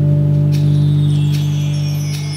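Dance music: a low chord or drone held steadily, ringing with little change.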